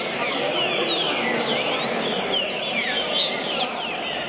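Several green-winged saltators (trinca-ferro) singing at once: loud whistled phrases that swoop down and up in pitch, overlapping several times a second, over a steady background of crowd noise in a large hall.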